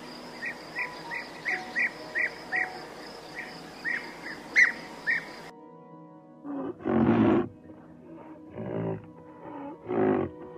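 Small birds chirping in short, repeated calls over a steady hiss for about five seconds. After a sudden cut, a rhinoceros gives three loud, low calls; the first, about a second after the cut, is the loudest.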